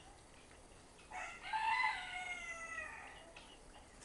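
A single long animal call with many overtones, starting about a second in, lasting about two seconds and sliding down in pitch at its end.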